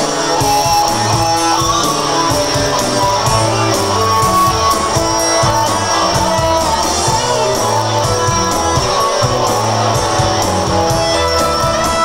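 Live rock band playing an instrumental, guitar-led passage over bass and a steady drum beat, heard loud through the room.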